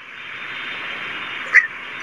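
A steady hiss with no speech, with a short faint sound about one and a half seconds in.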